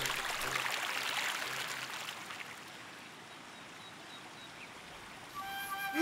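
Cartoon sound of a stream of running water: a steady rush that is loudest at first and fades down after a couple of seconds, under faint background music.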